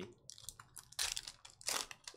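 Foil wrapper of a Panini NBA Hoops trading-card pack crinkling and tearing as it is ripped open, with two louder rips, one about a second in and one near the end.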